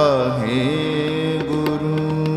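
Gurbani kirtan: a male ragi's voice glides downward at the start, then settles into a long held note over a steady harmonium drone with light tabla strokes.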